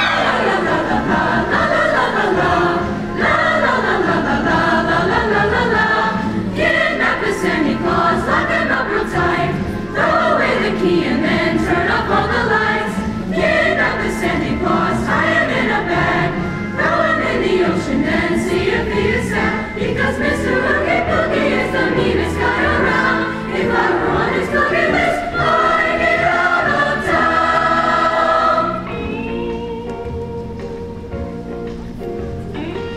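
Mixed-voice high school choir singing in parts, the sound dropping to a softer passage near the end.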